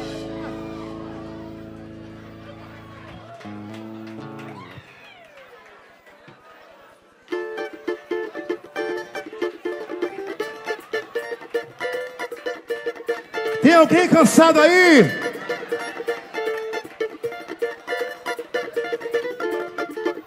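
Band music ending on a held chord that fades out over about five seconds. After a short quieter gap, a plucked string instrument starts a quick, rhythmic strummed pattern, and a voice calls out briefly over it about two-thirds of the way in.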